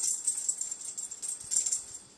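A small bell jingling in quick, irregular shakes as a cat dashes about, stopping near the end.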